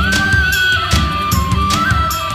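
Instrumental interlude of a Tamil film song: a single lead melody holds long notes with slides between them, stepping up at the start and dropping back about halfway through, over a steady drum beat.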